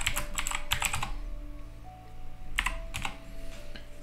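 Computer keyboard typing a terminal command: a quick run of keystrokes in the first second, a pause, then a few more keystrokes past the middle. Soft background music with sustained notes plays underneath.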